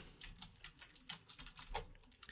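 Faint computer keyboard typing: a quick run of separate light keystrokes.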